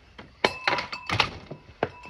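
A door being handled: a run of sharp clicks and knocks from a latch and a glass-paned door against its frame, loudest about half a second in and again about a second in.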